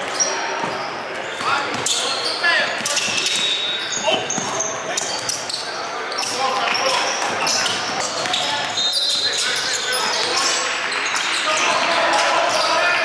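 Basketball game sounds on a hardwood gym floor: a ball bouncing as it is dribbled, and repeated short squeaks of sneakers, with voices calling out on the court.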